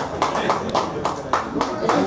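A small group of people clapping their hands in a steady rhythm, about three claps a second.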